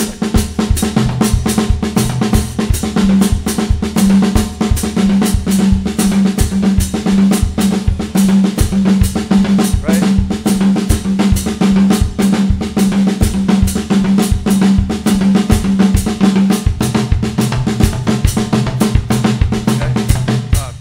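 Drum kit played in a steady, repeating groove: bass drum under a fast, even stream of stick strokes on the drums, with a low drum tone recurring at a regular pulse.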